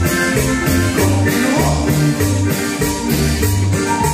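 A live band playing dance music, with a stepping bass line and a steady beat of about four strokes a second.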